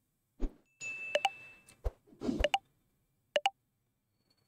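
Short computer sound cues from a Python voice-assistant script: a beep signalling the start of listening, then a swish signalling that speech is being processed. Several sharp short clicks fall among them.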